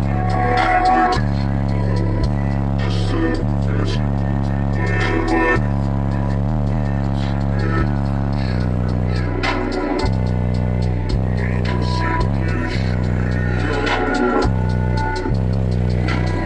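Bass-heavy music played very loud through a competition car-audio system's URAL subwoofers, heard inside the car's cabin, with deep bass notes that hold and change every second or two.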